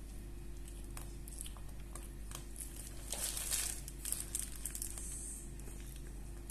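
Plastic piping bag full of whipped cream crinkling softly as it is squeezed, with scattered small clicks and a louder rustle about three seconds in, over a steady low hum.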